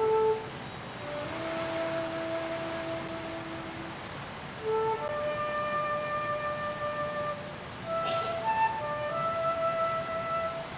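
Student concert band playing a slow passage of long held notes that change every second or two.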